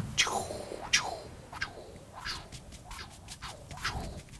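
Paintbrush bristles on canvas: two sweeping strokes in the first second, then a run of quick, light dabs.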